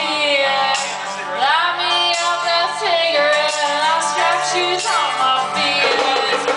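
A woman singing live into a microphone, her voice sliding between notes, over a small band with acoustic guitar and upright bass.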